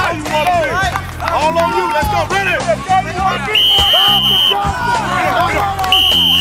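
Coach's whistle blown in a steady blast of about a second, with a second blast starting right at the end. Underneath is background music with a steady bass beat and voices.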